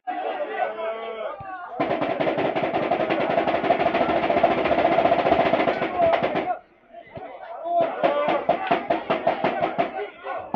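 A rapid drum roll with voices over it, breaking off about six and a half seconds in and starting again about a second later.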